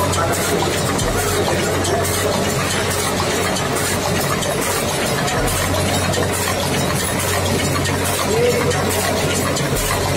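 Steady factory machinery running: an even mechanical noise over a constant low hum, with no distinct strokes or impacts.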